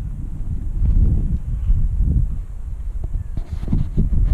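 Wind buffeting the camera's microphone in irregular low rumbling gusts.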